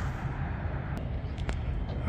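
Outdoor background noise: a steady low rumble with a light hiss, and two faint clicks about a second and a second and a half in.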